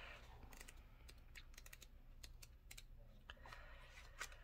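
Near silence, with faint light clicks and ticks of paper pages being leafed through in a small paperback guidebook.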